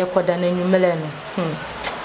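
A woman's voice making a drawn-out, held vocal sound for about a second and a half, fading out before the end, over a steady background hiss.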